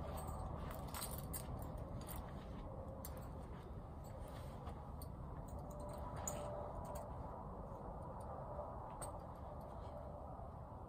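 Faint scattered clinks and clicks of horse tack hardware, bridle buckles and halter snaps, as a western bridle is taken off and a halter buckled on, over a steady low rumble.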